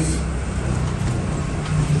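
Steady low rumble with a faint hum: the background noise of the room.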